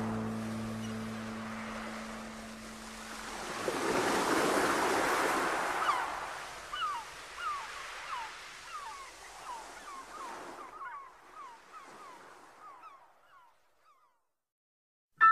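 End of a recorded track: a held chord dies away, and a wash of sea-surf sound effect swells and fades. Over it comes a run of short falling chirps, about two a second, that thin out into silence.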